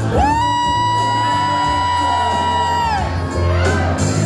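Music with a steady bass line, over which a single long, high "whoo" cry swoops up at the start, holds one pitch for about three seconds, then drops away.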